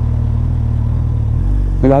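Suzuki Hayabusa Gen 2's inline-four engine running steadily at low revs through its Yoshimura R-77 exhaust, heard from the rider's helmet. About a second and a half in, the engine note deepens as the bike pulls away.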